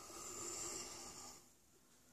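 Pencil lead of a drawing compass scratching across paper as it sweeps one arc, a faint dry rasp lasting about a second and a half.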